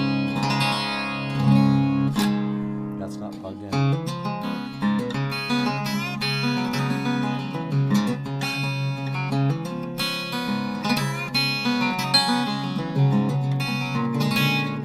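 1952 Gretsch 6185 Electromatic archtop guitar played unplugged, heard acoustically. Strummed chords ring out for the first few seconds, then a run of picked notes and chords follows.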